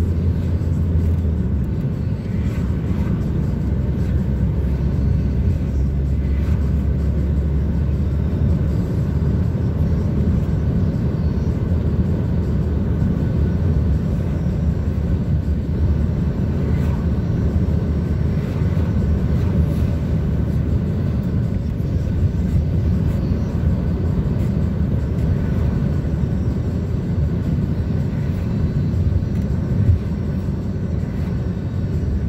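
Steady low rumble of tyres and engine heard from inside a moving vehicle's cabin at road speed.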